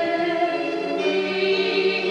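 A choir singing long held notes in chords, the harmony shifting about a second in.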